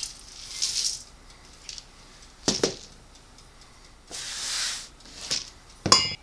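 Dry old-fashioned oats poured from a canister and measuring cup into a stainless steel mixing bowl: two short rushes of grain, each about half a second, near the start and about two-thirds through. A knock comes between them and a sharp metal clink near the end.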